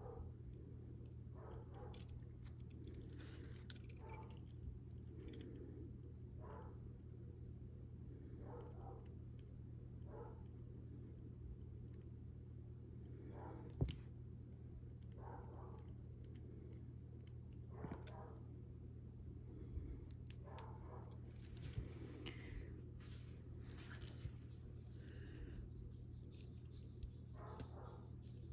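Steady low hum with faint, scattered handling noises: soft clicks and brief rubs of a small edge-paint roller applicator working along the raw edge of a vinyl bag tab held in the fingers. One sharper click about 14 seconds in.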